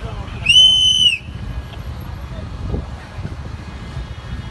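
A single whistle blast lasting under a second, one high steady tone that bends up as it starts and down as it ends, over a low street rumble.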